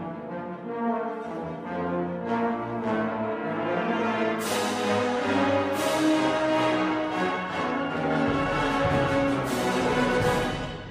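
Wind ensemble playing held, layered chords with brass to the fore, broken by several sharp strikes from the percussion.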